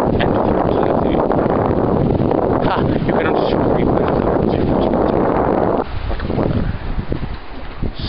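Strong wind buffeting the microphone as a heavy, steady rumble that drops off sharply about six seconds in.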